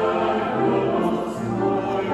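A small church choir singing in long, held notes, accompanied on a grand piano.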